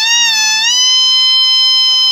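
Shehnai, a double-reed pipe with a metal bell, playing a melody: the note dips, then rises about two-thirds of a second in to a long held high note, over a faint low drone.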